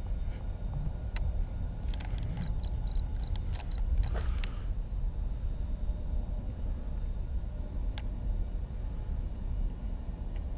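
Steady low rumble with a few scattered clicks, and a quick even run of about seven short high-pitched electronic beeps about two and a half seconds in.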